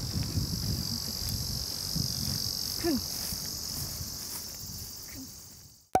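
Outdoor insect chorus: a steady, high-pitched chirring, with a low rumble underneath. It fades out toward the end and stops with a brief click.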